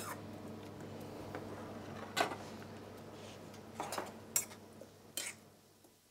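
A metal spoon clinking against a stainless-steel saucepan a handful of times while stirring julienned leek and carrot as they blanch, over a steady low hum.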